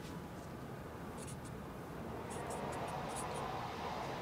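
Pen scratching on spiral-notebook paper as a handwritten entry is written and corrected, in a few short strokes about a second in and a longer run of strokes from about two seconds on.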